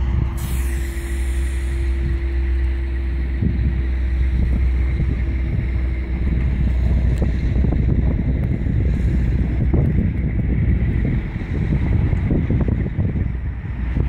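A vehicle engine running close by with a steady low rumble, while wind buffets the microphone from a few seconds in.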